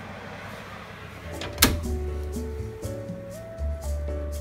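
Oven door shut with a single sharp clunk about one and a half seconds in, just as background music starts up with a steady melody and bass.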